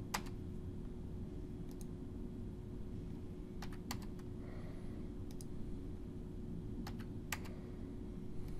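Computer mouse and keyboard clicks: a handful of sharp single clicks spread unevenly a second or so apart, over a steady low electrical hum.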